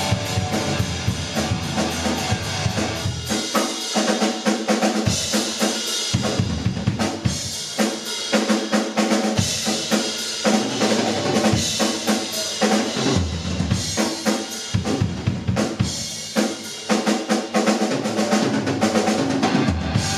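Live rock trio playing an instrumental passage with no vocals: the drum kit is prominent, with busy snare, kick and rim hits under electric guitar and bass. The deep low end drops away for much of the middle, coming back in short bursts, before the full band comes in again near the end.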